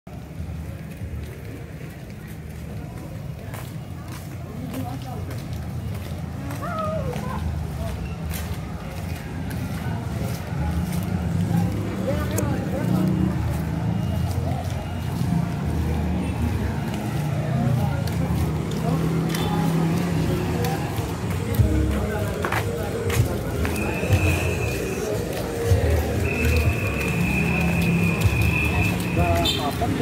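Busy night-street ambience: indistinct voices of passers-by, music and motor traffic over a low rumble, growing louder over the first ten seconds. A steady high tone sounds twice in the last several seconds.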